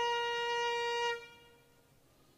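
Trumpet holding one long final note of a call, a single steady pitch that stops a little after a second in and dies away.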